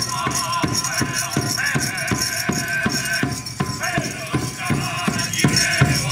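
Powwow straight-dance song: voices singing over a steady drumbeat of about three beats a second.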